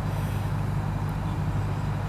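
Steady low rumble of wind buffeting the microphone.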